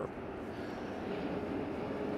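Steady distant engine noise with a faint held hum, slowly getting louder.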